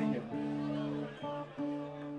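Guitar strumming a few chords, each struck and left to ring briefly before the next.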